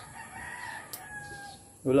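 A faint, drawn-out bird call held for more than a second, its pitch rising slightly and then easing off. A woman's voice speaks a word right at the end.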